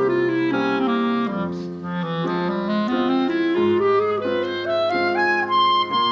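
A clarinet playing a legato melody that steps down for about two seconds and then climbs higher, ending on a held high note, over a quieter low accompaniment.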